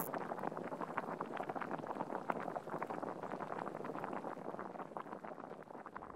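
Quiet, dense, irregular crackling and bubbling of a pot simmering on a hob, fading slowly.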